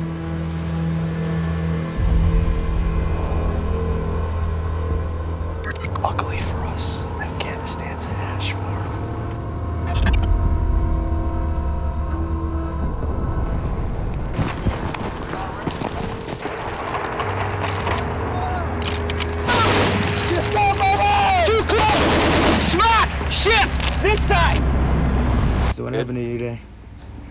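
Trailer soundtrack: a sustained low music score with gunfire and explosions mixed over it, the shots and blasts coming thicker in the second half.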